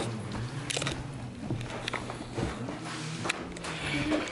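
A small dog scrabbling and nosing at carpet as it chases a light spot, with a few scattered light knocks from its paws, over a low steady hum.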